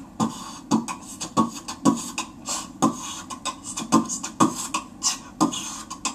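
Human beatboxing into cupped hands: a rhythm of deep kick-drum sounds with hissed snare and hi-hat sounds between them.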